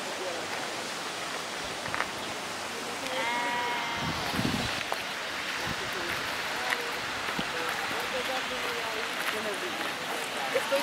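A sheep bleats once, a bit under a second long, about three seconds in, over steady outdoor wind noise; just after the bleat, a gust of wind buffets the microphone.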